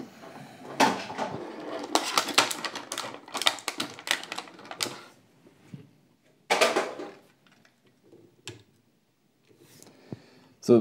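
Plastic blister tray and cardboard box of a diecast model car being handled while the car is pulled out: a dense run of crinkling and clicking for about five seconds, then a short rustle and a single click later on.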